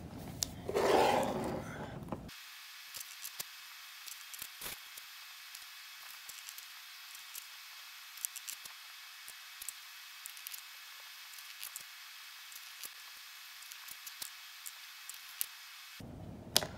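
Faint, scattered small clicks and taps over a thin hiss, from bottles, brush and powder jars being handled while dip-powder base is brushed onto nails. There is a brief rustle about a second in.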